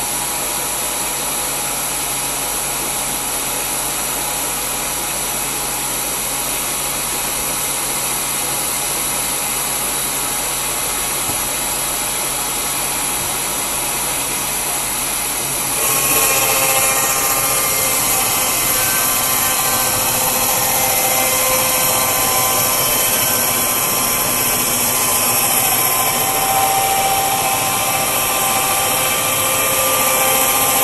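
Portable sawmill running with a steady mechanical drone. About halfway through it grows louder and takes on a whining tone as the saw head travels along the log, cutting it.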